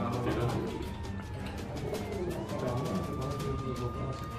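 Siren wailing slowly: a single tone that falls in pitch over about two seconds, then rises again and holds, over background music.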